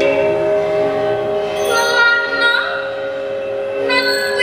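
Large hanging metal bells and metallophones of a gamelan-style experimental ensemble ringing together in long, overlapping sustained tones, like a held chord. One tone bends downward in pitch about two and a half seconds in.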